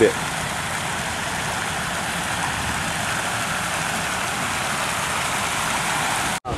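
Fountain jets splashing into a stone basin: a steady hiss of falling water.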